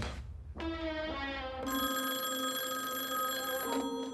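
A telephone bell rings once for about two seconds, over sustained music tones that begin just before it.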